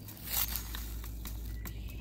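Paper seed packet rustling and crinkling as it is handled and tipped, with a short crinkle about half a second in and a few small clicks, over a steady low rumble.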